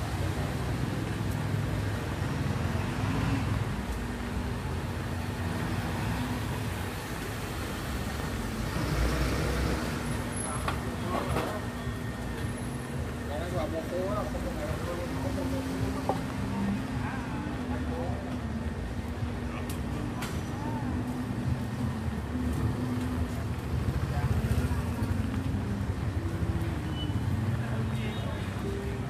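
City street traffic: a steady rumble of passing motorbike and car engines, with people's voices in the background.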